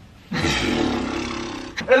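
A person letting out a loud, harsh roar-like yell that starts a moment in and lasts about a second and a half, with speech starting right at the end.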